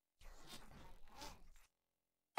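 A faint, scratchy, muffled voice saying a short line, lasting about a second and a half.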